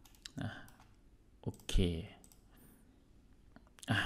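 A few sharp computer mouse clicks: one right at the start, another just after, and one about a second and a half in, with quiet between.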